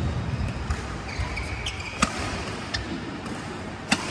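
Badminton rally: a racket striking the shuttlecock with sharp cracks, twice about two seconds apart, the second at the very end, with footfalls and a shoe squeak on the court mat in between.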